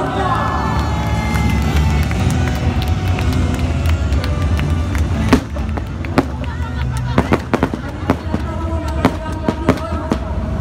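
A rapid, irregular string of sharp bangs and cracks from a staged combat demonstration, starting about five seconds in with one loud bang and thickening towards the end. Before that an amplified voice and music carry over a steady low rumble.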